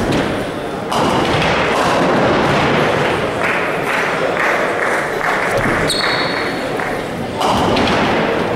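Heavy balls rolling down classic ninepin bowling lanes in a large hall, giving a steady rumble with thuds. Voices murmur in the background.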